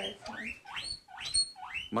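Guinea pig wheeking: a quick run of about five short squeals, each sliding sharply upward in pitch.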